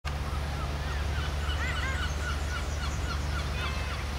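Several birds calling in short, quick, arched chirps that overlap one another, over a steady low rumble.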